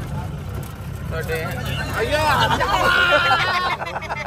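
Jeep engine and body rumble heard from inside the vehicle while it drives over a rough dirt track, a steady low drone. Passengers' voices chatter over it from about a second in.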